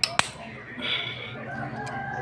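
A rooster crowing, over a steady low hum, with two sharp knocks right at the start.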